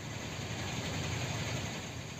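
Road traffic in a jam: the steady low rumble of many vehicle engines idling and crawling, swelling slightly toward the middle.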